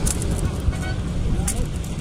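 Street background noise: a steady low rumble of road traffic with voices in the background and a few short sharp clicks.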